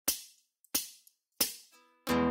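Three evenly spaced, hi-hat-like ticks about 0.7 s apart, each fading quickly: a tempo count-in before the song. Faint held notes sound near the end.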